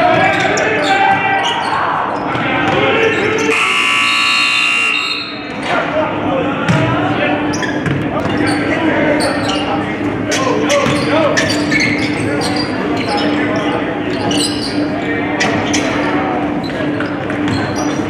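Basketball game in a gym hall: a ball bouncing on the hardwood and voices of players and spectators. A buzzer sounds for about two seconds, about three and a half seconds in. A steady low hum sits underneath.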